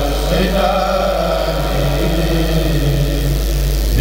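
Kourel of men chanting a Mouride khassaid in unison without instruments. They hold one long note with a slight shift in pitch early on, then break off just before the end as the next phrase starts.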